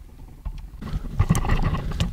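Low, gusty wind buffeting and handling noise on a handheld camera's microphone, starting about half a second in, with a few sharp knocks.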